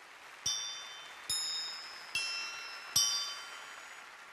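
Four single hammer strikes on hanging steel chimes made from scrap railway rail, a little under a second apart. Each gives a bright, high ringing note that dies away slowly.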